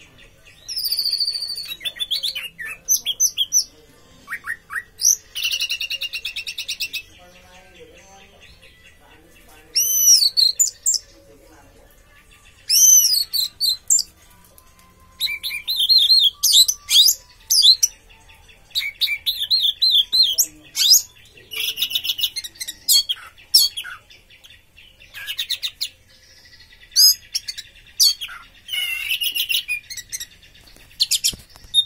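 Orange-headed thrush (anis merah) singing in repeated bursts of high, varied whistled and chattering phrases, each a second or two long, with short pauses between them.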